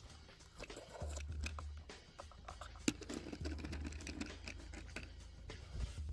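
Small clicks and taps of a plastic toy stroller being handled and rolled across wooden planks, with one sharp click just before the middle. Low wind rumble on the microphone comes and goes.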